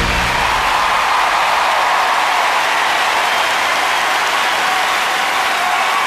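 Large audience applauding as a piece ends; the last low notes of the orchestra die away in the first half second, leaving a dense, even wash of clapping.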